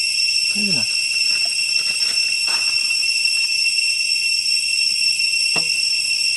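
Steady high-pitched insect chorus: several unwavering shrill tones held together. A short falling vocal sound comes about half a second in, and a faint click near the end.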